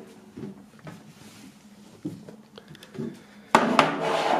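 Handling of a metal tin box: a few faint clicks, then a sudden louder knock and rattle about three and a half seconds in as the tin is moved over the table.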